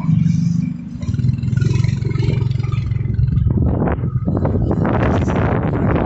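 Motorcycle engine running as it rides along, with wind buffeting the microphone from about halfway in.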